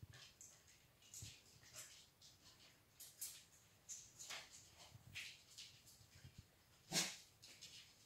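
A dog searching by scent, sniffing in short, faint bursts, with one louder sniff about a second before the end.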